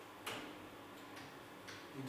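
Three faint, short clicks over quiet room tone, the first, about a quarter second in, the loudest.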